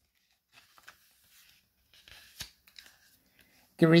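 Near silence with a few faint rustles and small clicks, like light handling noise; a man's reading voice starts again near the end.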